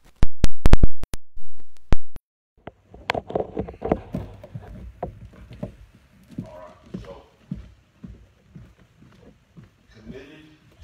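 A stream audio failure. In the first two seconds a series of loud clicks and pops cuts in and out with gaps of dead silence. Then a man's voice comes back through the microphone, broken up and unclear.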